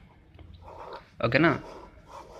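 Pen scratching on paper in faint strokes as words and circles are written, broken about a second in by a short spoken phrase.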